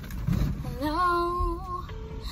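A female voice singing, sliding up into one long held note with a slight waver.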